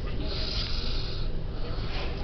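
Pages of a paperback book being turned by hand, a paper swish about half a second in, over a steady low rumble.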